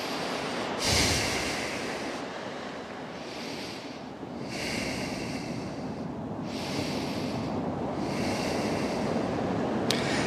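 A person breathing slowly and audibly in and out through the nose, about five long breaths of a second or two each, in a resting yoga pose. Underneath is a steady wash of surf.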